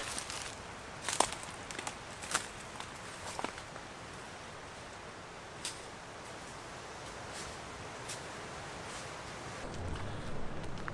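Footsteps on a leafy, rocky path, a few distinct steps in the first three and a half seconds growing fainter as the walker moves away, then only a steady faint outdoor hiss.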